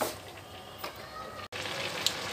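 A metal spoon clinks against an aluminium kadhai at the start and again a little under a second in, over a soft, steady hiss of grated carrots simmering in milk. The sound drops out briefly partway through.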